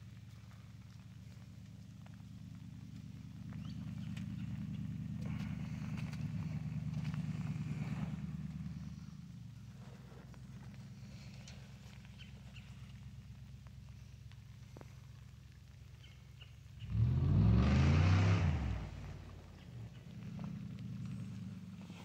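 A cow moos once, loud and drawn out for about two seconds, about seventeen seconds in. Under it runs the low, steady drone of a distant motor vehicle, swelling for several seconds early on.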